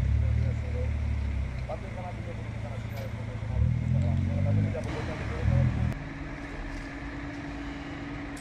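A car engine idling close by, swelling twice around the middle and dropping away about six seconds in, with people talking over it.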